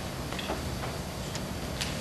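Faint, irregular footsteps and taps on a wooden stage floor as an actor walks across the set, heard over steady camcorder hiss and room noise.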